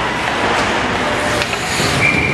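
Steady, loud noise of an ice rink during a youth hockey game in play: skating and stick play over the arena's background noise, with a single sharp click about one and a half seconds in.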